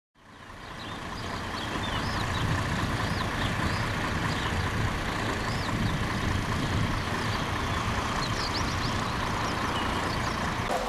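Diesel engine of a parked tour coach idling, a steady low rumble that fades in over the first couple of seconds. Short high chirps come and go above it.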